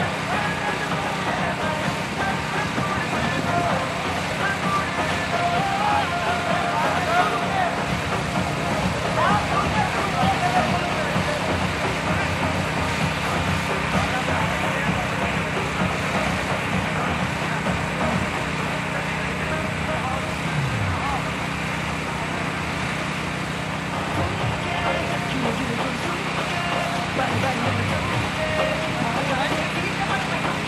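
Indistinct, distant voices of people on an open playing field over a steady background noise with a low hum.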